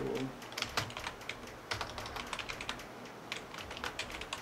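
Typing on a computer keyboard: an irregular run of quick key clicks.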